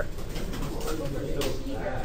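Low, indistinct murmur of several voices in a classroom, with a faint click about one and a half seconds in.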